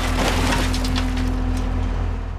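A car being crushed in a scrapyard car crusher: a sharp crack at the start, then continuous crunching and cracking of metal and glass over a steady low hum.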